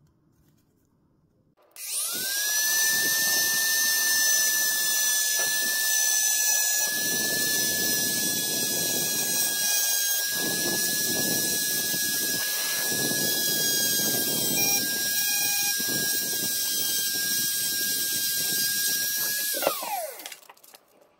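Small handheld electric rotary tool switched on about two seconds in and running at high speed with a steady high whine, its thin bit grinding through a curved piece of PVC plastic along a traced outline, the grinding rising and falling as it cuts. Near the end it is switched off and the whine falls away as it spins down.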